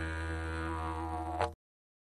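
Agave didgeridoo playing a steady low drone with a rich stack of overtones, ending in a brief louder burst about one and a half seconds in, after which the sound cuts off abruptly into silence.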